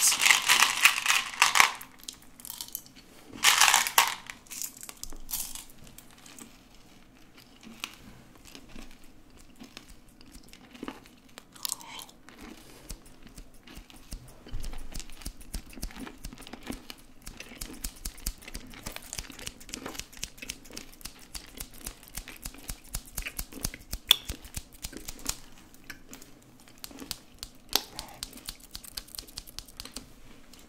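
Close-miked ASMR hand and object sounds right at the microphone. Two loud crinkly rustles come in the first four seconds, then a long run of small, quick, crisp clicks and taps.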